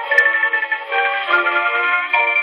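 A 1918 acoustic 78 rpm Columbia record of a waltz by a marimba-led dance orchestra, played on a Sonora acoustic phonograph through its horn. The music is thin, with no deep bass or high treble. A sharp click comes shortly after the start.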